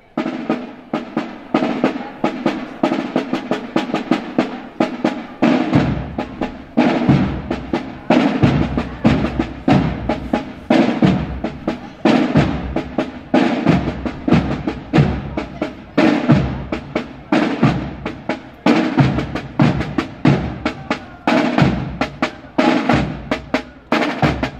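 A corps of rope-tensioned parade side drums playing a steady marching beat, with rolls and repeated strokes in an even rhythm. Deeper drum strokes join in about six seconds in.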